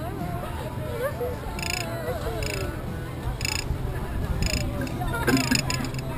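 A rider laughing and squealing over a steady low hum, with several short high clicks about a second apart.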